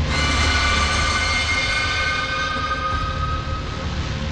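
Horror soundtrack stinger: a sudden cluster of high, sustained, dissonant tones that fades out after about three and a half seconds, over a steady low rumbling drone.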